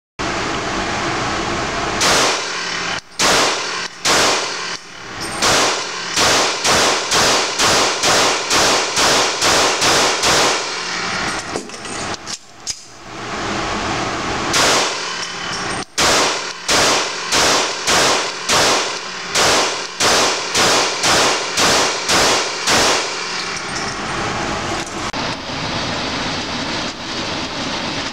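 Glock 21 pistol firing .45 ACP Hornady Critical Duty 220-grain +P rounds in an indoor range: two long strings of rapid shots, about two to three a second, with a pause of a few seconds between them.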